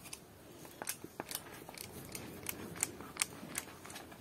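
Trigger spray bottle of room fragrance pumped in quick, short squirts: about a dozen faint, sharp hisses, roughly three a second.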